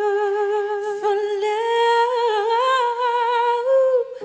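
Female singers holding long wordless notes with vibrato, almost unaccompanied, the pitch stepping up about a second and a half in.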